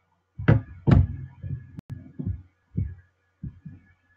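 Handling noise: a series of dull thumps and knocks close to the microphone, the two loudest about half a second and a second in, then lighter ones, with two sharp clicks near the middle. These fit a mobile phone being lowered and put down after a call.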